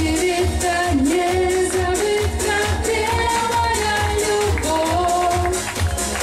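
A woman singing a pop-style song into a microphone, holding and bending long melodic notes, over music with a steady bass beat.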